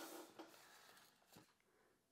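Near silence: a laugh fading out at the start, then two faint clicks.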